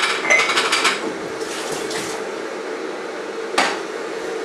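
Kitchen crockery and cutlery clinking and clattering in the first second, then one sharp knock on the worktop near the end, over a steady low hum.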